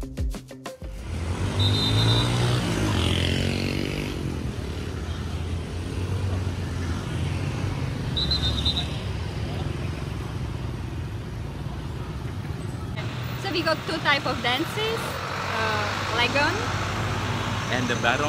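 Street traffic ambience: a steady low rumble of passing motor vehicles, with two short high beeps, and people's voices in the last few seconds.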